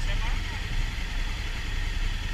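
Honda CRF1000L Africa Twin's parallel-twin engine idling steadily.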